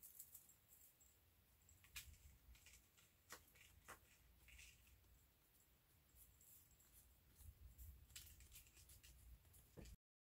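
Near silence, with a few faint clicks and light rustles of small paper craft pieces being handled.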